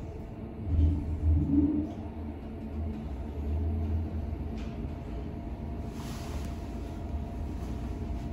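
ThyssenKrupp passenger lift car travelling down between floors: a steady low rumble with a faint hum, swelling louder about one to two seconds in.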